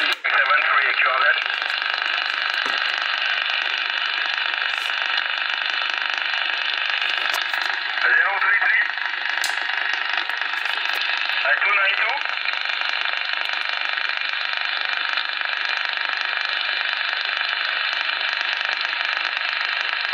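Transceiver receiving on upper sideband in the 11-metre band, giving a steady hiss of band noise. Faint, garbled voices of distant stations break through about a second in, around eight seconds and around twelve seconds.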